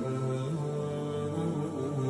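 Background vocal music: a low, sustained male chant whose held notes step slowly from one pitch to the next, with no beat.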